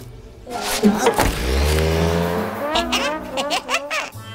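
Cartoon sound effect of a car engine starting with a burst of noise, then revving up with its pitch rising slowly for about two seconds. Short voice sounds follow near the end.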